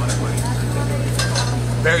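Light clinks of cutlery on plates over a steady low hum and faint background chatter.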